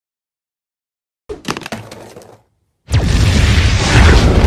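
Silence, then a short crackle of breaking, shattering noise; about three seconds in, a loud explosion sound effect with a deep rumble begins.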